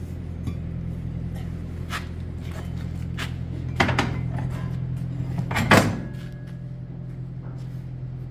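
Heavy steel parts being handled and set against each other on a steel workbench: a few metal knocks, the loudest about four and five and a half seconds in, over a steady low hum.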